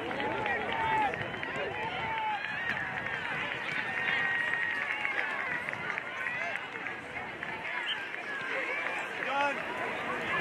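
Many overlapping voices of players and spectators at a youth soccer match, calling and shouting, with no single clear speaker.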